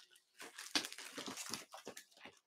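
Paper and plastic pages of a large poster binder rustling as it is handled and leafed through, in irregular bursts.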